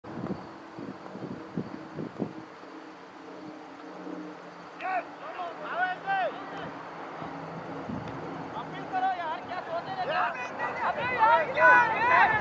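Cricket players shouting and cheering as a wicket falls, several voices calling out from about five seconds in and growing louder toward the end. A low steady hum runs underneath.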